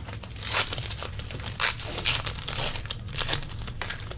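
Shiny foil wrapper of a trading-card pack crinkling and tearing as it is pulled open by hand, in several short, irregular crackles.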